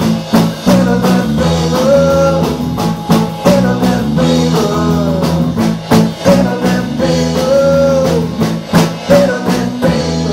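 Live rock band playing: a drum kit, electric guitars and a strummed acoustic guitar, with a melody line that slides up and down in pitch over the chords and drum strokes.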